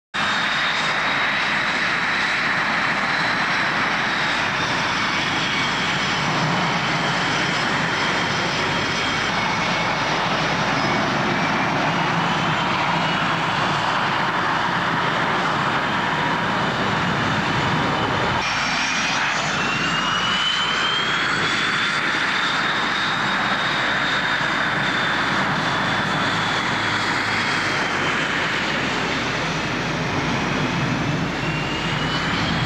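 Twin General Electric F404 turbofan engines of Canadian CF-18 Hornet fighters taxiing: a steady, loud jet noise with a high whine that drifts slowly up and down in pitch. About 18 seconds in, the sound changes abruptly.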